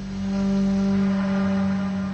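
A sustained low musical drone, one steady pitch with a stack of overtones, swelling through the middle and easing near the end.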